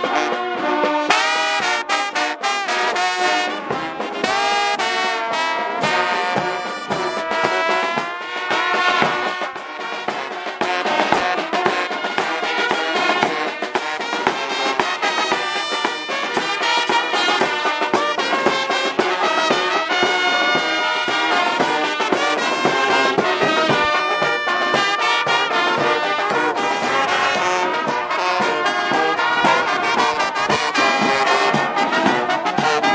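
Brass band playing: trombones, trumpets and sousaphones sounding a tune together over drums, continuously.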